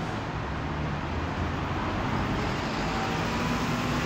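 Steady city road traffic with a low engine rumble from passing vehicles, buses among them.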